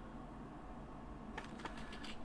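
Quiet room tone with a low steady hum, and a few faint light clicks about one and a half seconds in.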